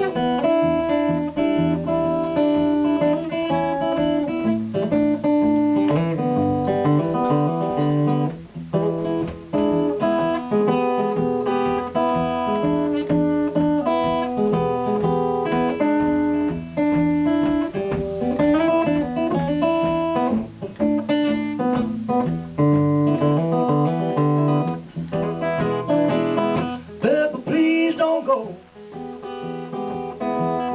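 An acoustic guitar played live in a blues instrumental break, with strummed and picked chords in a steady rhythm.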